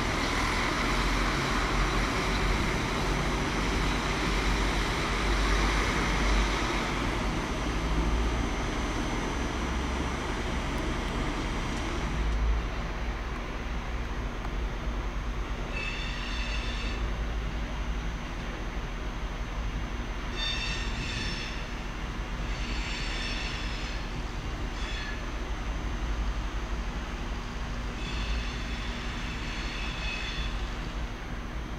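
An ICE-T high-speed train at a platform, with a loud, even rushing noise for about the first twelve seconds. Then a BRB diesel railcar stands at the platform with a steady low hum. Short high squealing tones sound five times in the second half.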